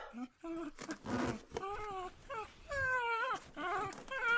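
A dog whining and whimpering: several drawn-out whines, each rising and then dropping in pitch.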